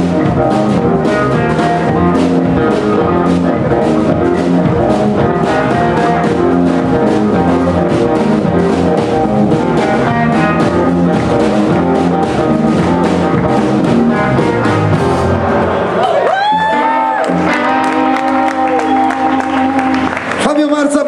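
Live blues band playing: electric guitar leading over bass and drum kit, with steady drum strokes. About sixteen seconds in, the drums stop and a long note bends up and is held over the closing chord as the song ends.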